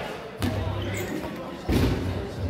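8.5-inch rubber dodgeballs striking hard: two thuds, one about half a second in and a louder one near the end, each ringing on in the echo of a large gym.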